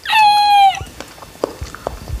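A loud, high, meow-like cry lasting under a second and dipping slightly at its end, followed by faint ticks and crinkles of fingers on aluminium foil.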